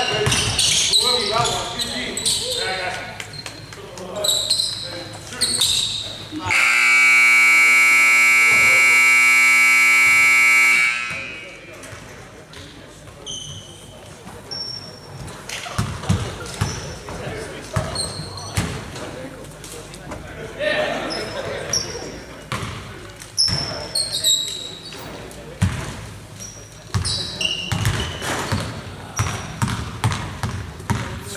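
Gym scoreboard buzzer sounding one long, steady blast of about four seconds, marking the end of a period. Before and after it, basketballs bounce on a hardwood court and sneakers squeak.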